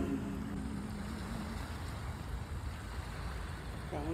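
An a cappella choir's final held note fading out in the first second and a half, followed by a steady low rumble and hiss of background noise.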